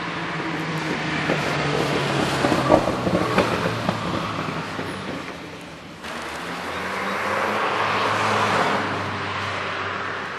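Road traffic: a vehicle passes close by, loudest two to three seconds in with a few sharp knocks. The sound changes abruptly about six seconds in, and a second vehicle swells past around eight seconds.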